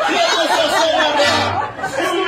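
A live accordion band playing, with people's voices chattering over the music.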